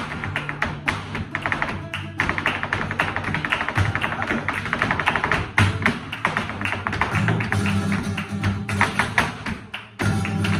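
Flamenco guitar playing tarantos under a dense run of quick, sharp taps from a dancer's footwork on the stage. The taps thin out and the level dips just before the end.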